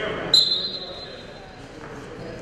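Referee's whistle blown once, a short sharp blast about a third of a second in that fades quickly, signalling the start of the wrestling bout. Gym crowd chatter runs underneath.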